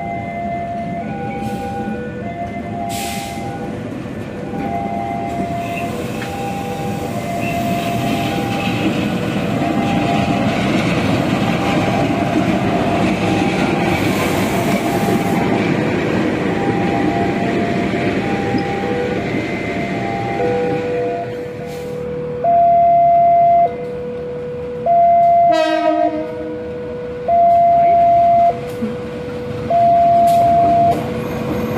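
Railway level-crossing warning alarm sounding its alternating two-tone electronic chime, switching pitch about once a second, over the rumble of trains passing. The chime becomes much louder in the last third.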